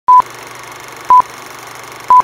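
Vintage film countdown leader sound effect: a short, loud, high beep once each second, twice here, timed to the countdown numbers, over a steady hiss and a low hum like an old projector.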